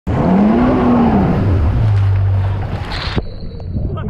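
Yamaha WaveRunner jet ski engine revving up and back down, then running steadily at a low idle. Rushing, splashing water runs under it and stops abruptly about three seconds in.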